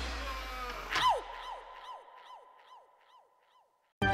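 The song's last chord dying away, then a cartoon sound effect about a second in: a short falling-pitch tone repeated about three times a second, each repeat fainter, until it dies out.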